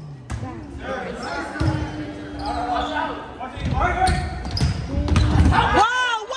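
Volleyball being served and played in a gym rally: sharp hand-on-ball hits echo in the hall among players' and spectators' shouts, with sneakers squeaking on the hardwood court near the end.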